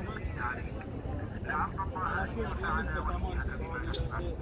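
Voices of several people talking nearby over a steady low rumble.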